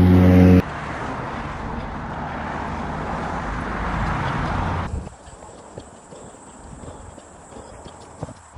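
A man's voice ends just under a second in, then a steady rushing noise runs for about four seconds and cuts off abruptly. After that come quieter, quick, light footfalls of a runner on a paved path, played at double speed.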